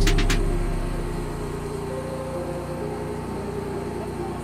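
Background music with drum hits fades out in the first second. A fire engine's motor is left running steadily, a low drone with a few held tones.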